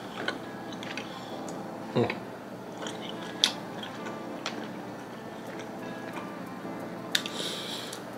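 A person chewing a bite of grilled pork belly yakitori, with soft mouth clicks and a murmured "mm" about two seconds in.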